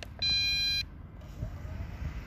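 A single steady electronic beep, a little over half a second long, given as a button on the drone's controls is pressed.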